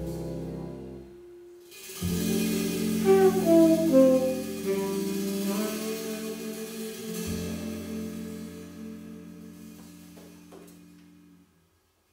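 Jazz bossa nova band of saxophone, archtop guitar, double bass and drums ending a song. After a short break, the band plays a final chord with a brief melodic line over it, and the chord is held and slowly fades out near the end.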